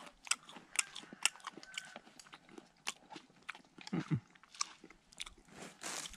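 A person biting and chewing a crunchy snack taken from a jar: a string of sharp, separate crunches, with a brief voiced sound about four seconds in.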